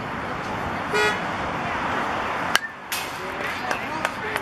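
A single sharp smack about two and a half seconds in, a pitched baseball striking leather or a bat at home plate, over steady outdoor ballfield noise. A short horn-like toot sounds about a second in.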